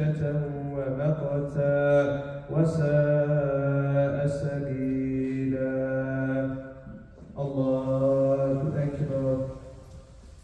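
An imam reciting the Quran aloud in a slow melodic chant, one man's voice holding long drawn-out notes. It breaks off briefly about seven seconds in, sings one more phrase, and falls quiet just before the end.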